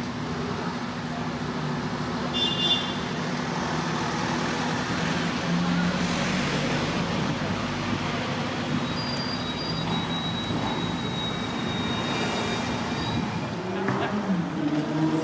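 Steady urban road traffic with vehicle engines running, and brief thin high squeaks about two and a half seconds in and again near the end.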